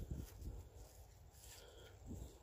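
Near silence: faint low rumbling, a little stronger briefly at the start.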